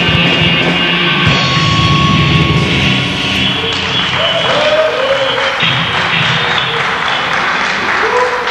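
A live heavy metal band with distorted electric guitars and drums plays the end of a song, the dense playing thinning out about three seconds in. Audience applause follows.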